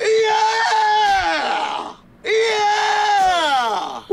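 A cartoon man's voice screaming twice: two long, loud screams of about two seconds each, each holding its pitch and then falling away at the end.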